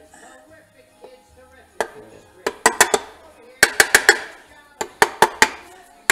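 Plastic mallet tapping the aluminium side cover of a 1972 Honda CT70 engine down onto its gasket and hollow dowels. The sharp taps come in quick groups of three to five, starting about two seconds in.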